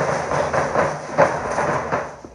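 Bass and snare drums of a Mexican danza drum band beating a rhythm, a dense clattering with repeated strokes.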